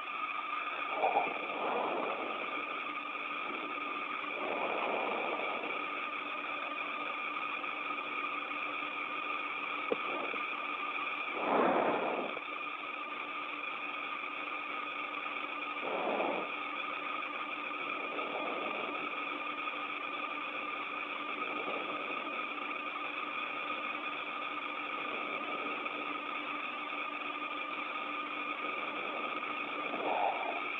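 Steady hiss with several constant hum-like tones from an open, band-limited broadcast audio line. A few faint, brief swells rise out of it about a second in, around five seconds, near twelve seconds (the loudest) and near sixteen seconds.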